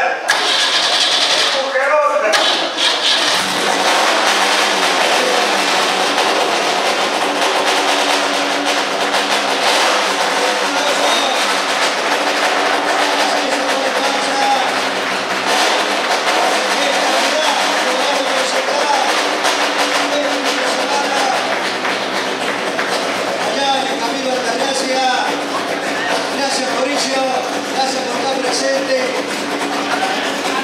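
Fiat 128 race car's four-cylinder engine starting and then running steadily, with people clapping and talking around it.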